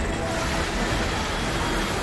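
Landslide on a hillside road: rock and earth crashing down in a steady, dense rumbling noise.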